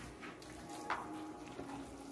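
A spoon stirring and scooping moist cornbread dressing in a bowl: faint wet mixing with a light click about a second in.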